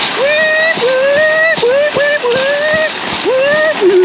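A man imitating a police siren with his voice, a run of rising "weep" calls repeated about every half second, over the rattle of a shopping cart's wheels rolling over asphalt.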